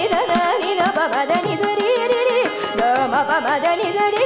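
Carnatic vocal music: a woman sings a line of constantly sliding, ornamented pitch, accompanied by violin, sharp mridangam strokes and a steady tanpura drone.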